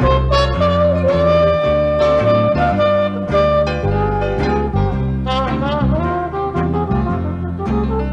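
Traditional jazz band playing with horns over a rhythm section and a steady beat, one horn holding a long note through the first few seconds before the lines move on.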